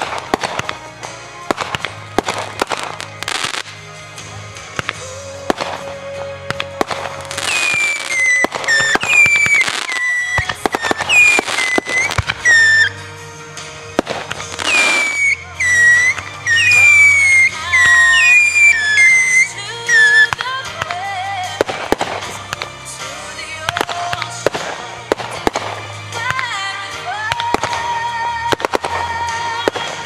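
Fireworks bursting and crackling in quick succession, densest and loudest in the middle stretch, with music playing throughout.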